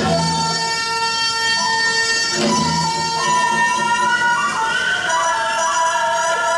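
Korean traditional music accompanying a tightrope act: a held melody that bends and steps in pitch, with a drum struck at the start and again about two and a half seconds in.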